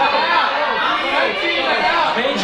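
Several voices from an audience talking over one another in a large room.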